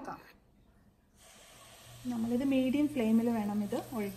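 Dosa batter sizzling faintly on a hot flat pan as it is ladled on, starting about a second in, with a low steady hum underneath.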